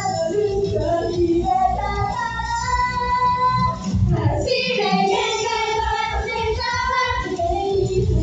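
Female idol group singing live into microphones over a loud pop backing track with a heavy bass beat, holding long notes a couple of seconds in. A quick downward sweep cuts through the music about four seconds in.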